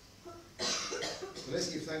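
A single sharp cough about half a second in, followed by a man starting to speak.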